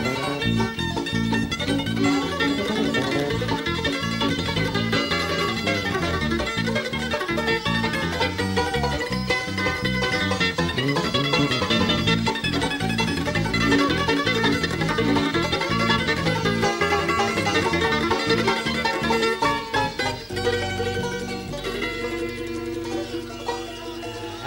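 Bluegrass band playing an instrumental break live, banjo and mandolin picking fast runs over acoustic guitar and electric bass. Near the end the picking drops away to a few held notes.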